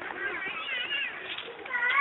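Labrador puppy whining in high, wavering cries, with a longer falling whine near the end.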